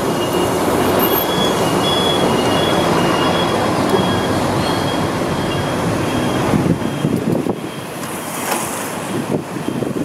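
Steady street noise on a rain-wet road, with a faint, short, high beep or chirp repeating about twice a second through the first seven seconds. The noise thins out near the end.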